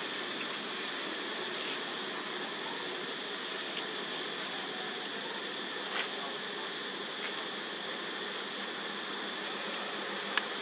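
Steady high-pitched insect drone, with a single soft click about six seconds in.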